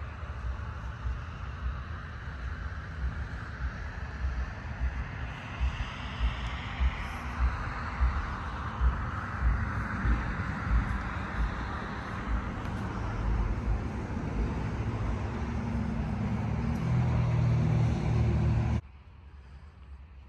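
BMW X5 xDrive35d's 3.0-litre straight-six turbodiesel idling steadily, with regular soft footstep thumps in the middle. The low drone grows louder over the last few seconds, then the sound drops off abruptly a second before the end.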